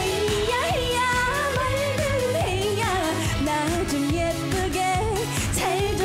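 Live trot song: a woman sings the melody of a bright, upbeat tune over a band backing track with a steady beat.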